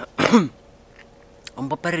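A man clears his throat once, a short loud burst with a falling voiced pitch, before he starts speaking.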